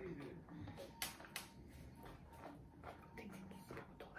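Faint handling sounds: a few soft clicks and rustles of a small plastic bag as red onion rings are taken out of it.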